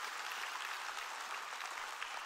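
Congregation applauding: a steady, fairly soft patter of many hands clapping.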